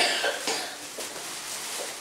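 A person coughing: one sharp cough, then a weaker one about half a second later.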